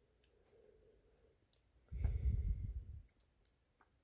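Faint scattered clicks of a circuit board in a metal frame being handled in gloved hands. A low rumble lasting about a second comes in the middle, the loudest sound here.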